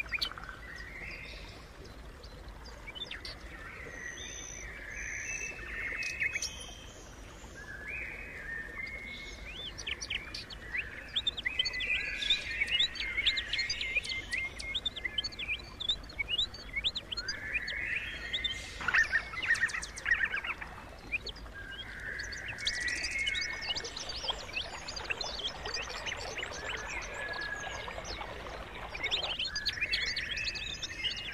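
A chorus of several birds chirping and calling in short notes and quick trills, growing busier and louder in the second half.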